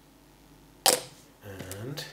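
Plastic cap of a small glass bottle of liquid cement set back onto the bottle with one sharp click, a little under a second in.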